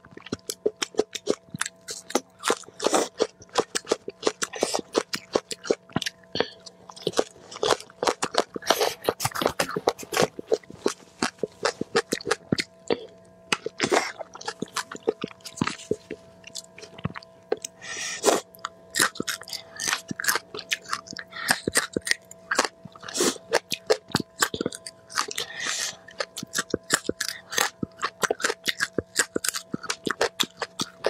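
Close-miked chewing and crunching of food, a quick, irregular run of sharp crunches and wet mouth sounds, over a faint steady hum.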